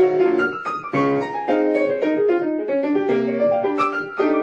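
Piano played in a lively instrumental passage: full chords and runs struck several times a second.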